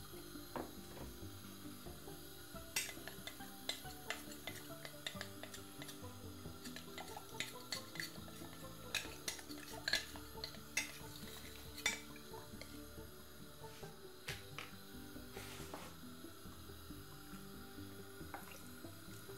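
Scattered light clinks and taps of kitchen utensils against pots and dishes, over quiet background music.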